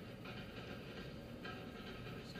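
Low, steady cabin noise of a car moving slowly in traffic: engine and road hum heard from inside the car.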